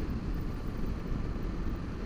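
Steady rush of wind and engine noise from a Honda Varadero 1000's V-twin motorcycle cruising on an open road, heard through a helmet-mounted microphone.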